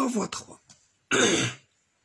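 A man clears his throat once, a short loud rasp about a second in.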